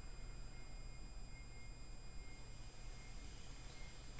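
Quiet room tone with a faint steady low electrical hum and thin, steady high-pitched tones underneath.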